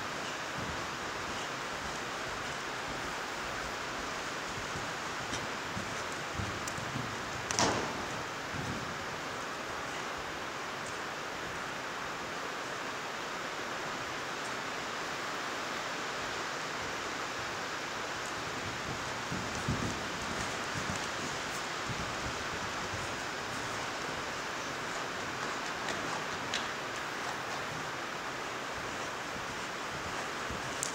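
Heavy rain pouring on the metal roof of an indoor riding arena, heard from inside as a steady hiss, with one brief knock about a quarter of the way in.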